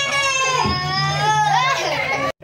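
Several children squealing in long, high-pitched cries that slide up and down in pitch, over a steady low hum from the spinning teacup ride.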